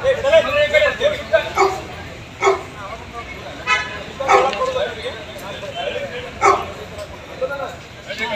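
A man scolding someone at shouting volume, in short loud outbursts a second or two apart, over the steady chatter of a crowd.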